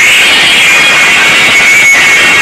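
Extremely loud DJ sound-system music blaring from towering speaker stacks. It comes through as a harsh, shrill wash with a steady high tone running through it and little bass.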